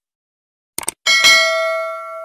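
Subscribe-button animation sound effects: a short mouse click, then about a second in a bright notification-bell ding that rings on and fades.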